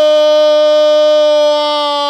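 A man's loud, long held goal call, 'goooool', sustained on one note that slowly sinks in pitch and eases slightly in loudness near the end.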